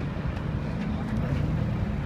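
Street traffic: a vehicle engine running steadily with a low hum.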